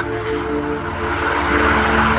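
A steady droning hum made of several sustained low tones, with no clear beat.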